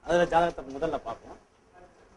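Speech only: a man talking briefly, then a short pause.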